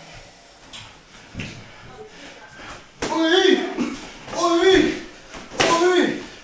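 Three loud shouted vocal calls, each about half a second long and a second and a half apart, like the "oi" calls shouted during Muay Thai sparring. A dull thump comes about a second and a half in.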